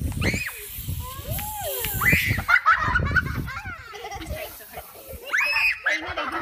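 Young children shouting and shrieking as they play, with several high squeals.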